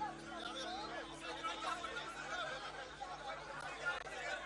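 Crowd chatter: many people talking at once with no single clear voice, over a low steady hum that fades about halfway through.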